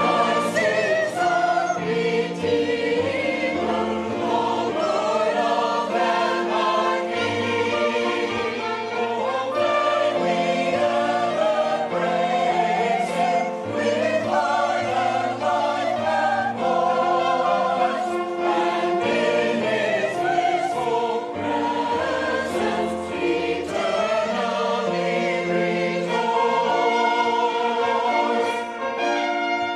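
Mixed church choir singing a hymn anthem in sustained phrases with vibrato, accompanied by piano.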